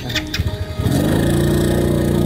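Small step-through motorbike's engine revving as the rider pulls away, its pitch rising about a second in and then holding steady.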